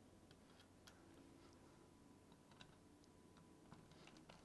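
Near silence with faint, scattered light clicks as hands handle small screws and metal parts inside an open laptop case.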